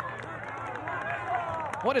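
Faint voices of players calling out on the pitch during a set piece, over a steady low hum.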